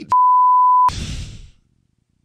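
A single steady, high censor bleep, just under a second long, dubbed over a swear word.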